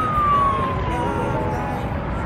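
An emergency vehicle siren wailing, one long slow fall in pitch.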